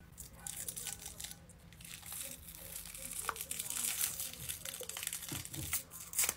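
Special-effects prosthetic makeup being peeled off the skin of the face: a faint, crackly peeling and tearing that grows a little louder after the middle.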